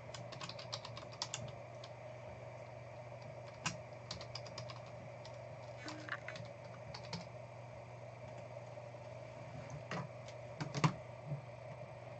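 Computer keyboard being typed on in short bursts of clicks a few seconds apart, with a couple of louder knocks near the end.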